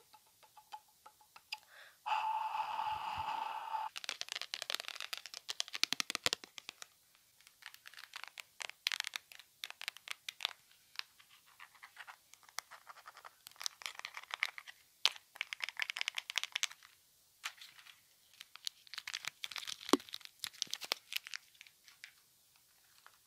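A run of close-miked ASMR trigger sounds from small objects handled in the hands. A steady buzzing tone lasts about two seconds near the start, followed by dense, rapid crackling and tapping that comes in spurts.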